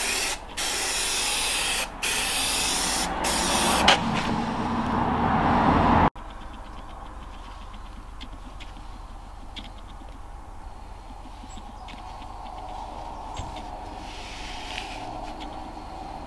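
Aerosol spray adhesive for carpet tiles hissing from the can in about five long bursts over the first six seconds, then stopping abruptly. After that comes a much quieter stretch with faint scratchy ticks as hessian sacking is pressed down onto the glued board by hand.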